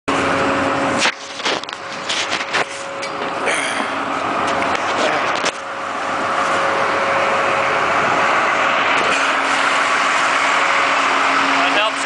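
Heavy construction machinery's diesel engine running with a steady hum, growing louder from about six seconds in, with a few sharp clanks in the first half.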